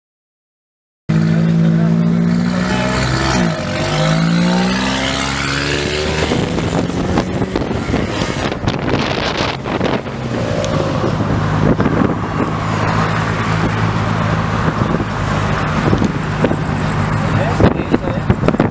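Car engines running in a moving convoy, starting about a second in. In the first few seconds the engine pitch falls and rises again as the car revs, then it settles into a steadier low drone while driving.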